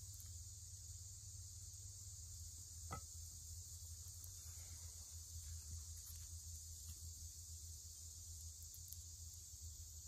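Faint steady high-pitched insect chorus, with a single sharp click about three seconds in.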